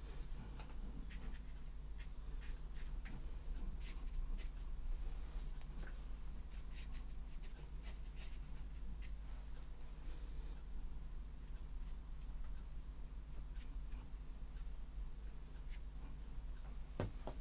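Hake brush dabbing and stroking on watercolour paper: a run of many short brushing strokes, over a steady low hum.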